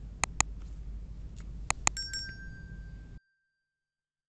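Subscribe-button animation sound effects: two quick mouse clicks, then two more about a second and a half later, followed by a short, bright notification-bell ding that rings out for about a second.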